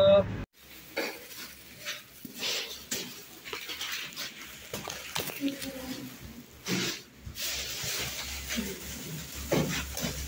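Rustling, scuffing and light knocks from handling noise as the phone is carried through a doorway and along a hallway, with faint low voices.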